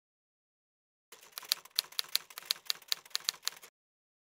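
Typing sound effect: a quick run of about a dozen sharp key clicks, roughly five a second, starting about a second in and stopping just before the end, over otherwise dead silence.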